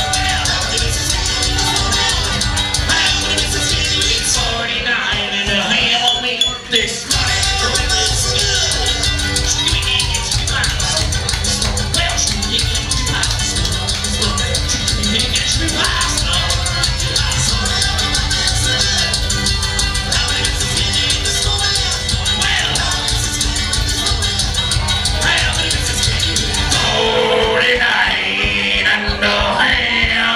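Live string band playing fast bluegrass on banjo, mandolin and a one-string bass built from a truck gas tank, with singing. The bass drops out briefly about five seconds in and again near the end.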